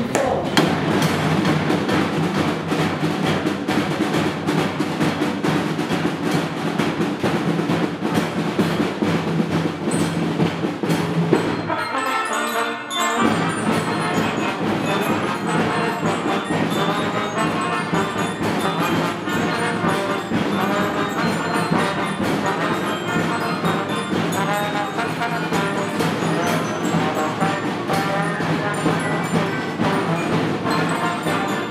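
Children's band of trumpets, saxophone, trombone and drums playing together. About twelve seconds in, the sound breaks off briefly and resumes, with the brass melody more prominent.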